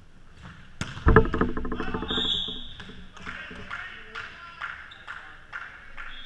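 Indoor volleyball rally: a hard hit on the ball about a second in is the loudest sound, followed by a ringing pitched sound and scattered taps and squeaks of players moving on the gym floor.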